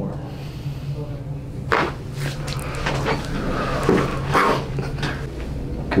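Joints in the neck and upper back popping during a chiropractic adjustment: a sharp first crack just under two seconds in, then several more in a quick series over the next few seconds, over a steady low hum.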